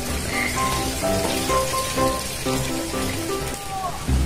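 Background music: a melody of short held notes at changing pitches over a low bass line, with one falling note near the end, all over a steady hiss.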